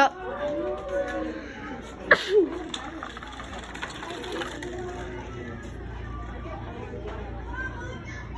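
Students' voices and chatter in a classroom, with a short laugh about two seconds in.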